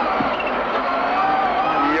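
Subaru Impreza WRC's turbocharged flat-four engine, heard from inside the cockpit, accelerating hard out of a tight corner, its pitch dipping and then rising steadily.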